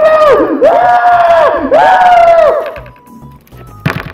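A baby crying loudly in three long wails, each falling off at the end. About three seconds in it stops, leaving a faint steady tone and a sharp click near the end.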